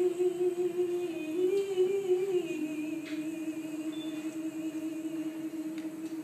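A woman singing one long held note into a microphone, soft and steady, the pitch wavering briefly and settling a little lower about two and a half seconds in.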